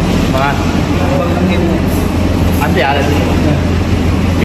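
Restaurant din: a loud, steady low rumble with people's voices over it.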